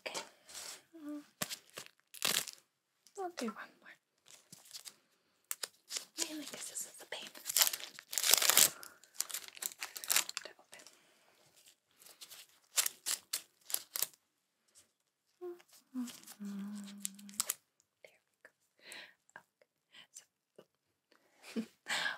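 Adhesive bandages being unwrapped by gloved hands: paper wrappers tearing and crinkling and backing strips peeling off, in quick crackly strokes. A longer, louder tear comes about seven to nine seconds in.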